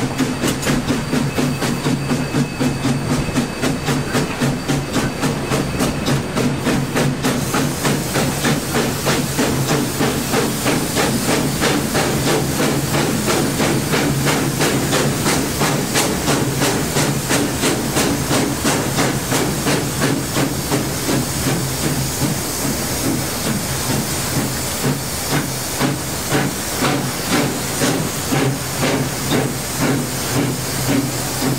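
Exhaust of K-28 class 2-8-2 steam locomotive no. 473, heard from the cab: a steady, even run of exhaust beats with a constant hiss of steam as the engine works along the line.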